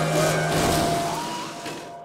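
Cartoon sound effects of a speeding car skidding and crashing, with a noisy rush and a few sharp knocks, dying away near the end.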